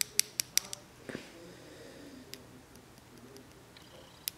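Light, sharp clicks of a nail polish bottle and brush being handled: a quick run of about five in the first second, then two more spaced out, over a faint steady hum.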